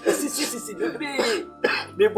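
A man's voice speaking, with background music underneath.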